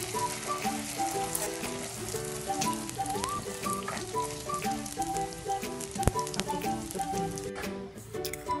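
Oil sizzling steadily as fuchka puris deep-fry in a wok, under background music with a melody; the sizzle cuts out shortly before the end.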